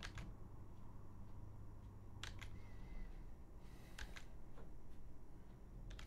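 A few faint clicks at a computer over a low steady hum: one at the start, a pair about two seconds in and another pair about four seconds in.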